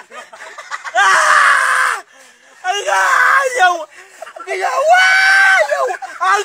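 A person screaming: three loud, long cries about a second or more apart, the last one the longest.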